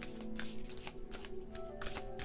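A tarot deck being shuffled by hand: a string of short, crisp card slaps and riffles. Soft background music with long held tones runs underneath.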